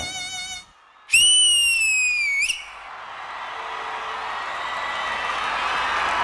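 The dance music stops. After a brief gap there is one loud, piercing whistle lasting about a second and a half, falling slightly in pitch with a quick upward flick at the end. Then applause and cheering build steadily louder.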